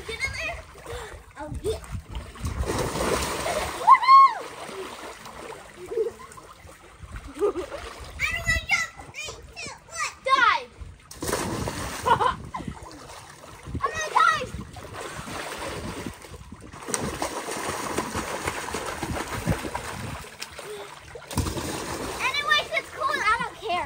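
Children splashing in a water-filled inflatable pool, with high-pitched children's voices calling out now and then over the splashing.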